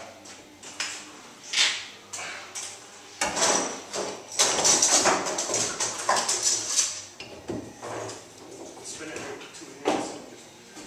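Metal bar clamps clattering, sliding and knocking against each other and the wood as they are fitted and tightened on a steam-bent wooden rub rail, in an irregular run of scrapes and knocks.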